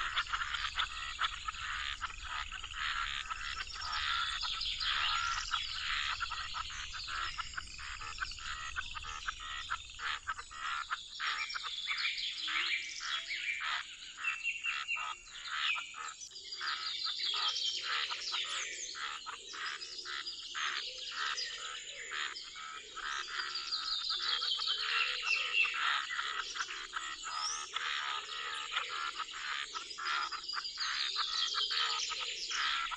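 A chorus of frogs calling at a pond, many rapid overlapping trills and croaks, with birds chirping among them. Deeper calls join about halfway through, and a low rumble underneath stops about a third of the way in.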